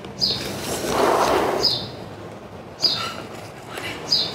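A small bird chirping over and over, a short high chirp that drops slightly in pitch, about every second and a half, with a brief burst of noise about a second in.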